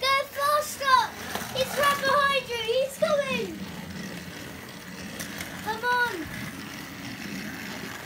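A child's high-pitched voice for about the first three and a half seconds, over the steady low whirr of battery-powered toy train motors running on plastic track. A short word comes near the end.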